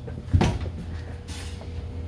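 A single sharp thump about half a second in, like a door or cupboard knocking, over a steady low hum.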